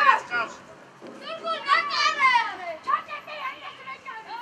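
Children's high-pitched voices shouting and calling out during a youth football match, in a few bursts, loudest about two seconds in.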